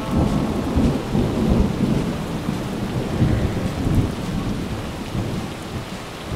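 Heavy rain with low, rolling thunder: a dense steady downpour over a rumble that swells and fades.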